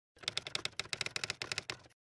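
Typing sound effect: a quick run of sharp key clicks, about ten a second, that starts shortly after the beginning and stops abruptly just before the end.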